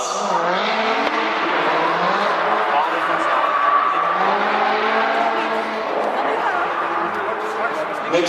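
Distant drift cars' engines revving, the pitch rising and falling and held steady for a stretch in the middle, with indistinct voices mixed in.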